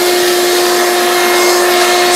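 Shop vacuum running with a steady whine over rushing air, its hose sucking dust off a concrete floor through a Dust Deputy cyclone separator.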